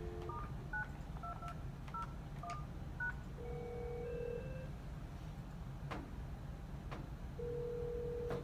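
Telephone dial tone cutting off as a number is keyed in: a quick run of about nine short keypad (DTMF) beeps. Then a ringback tone sounds twice, about a second each and four seconds apart, as the test call goes out, with a couple of faint clicks between.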